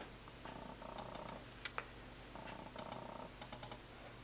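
Faint computer mouse use: two short runs of rapid scroll-wheel ticking, about two seconds apart, and a few light button clicks.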